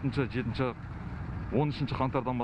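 A man speaking in short phrases with a pause of about a second in the middle, over a steady low rumble.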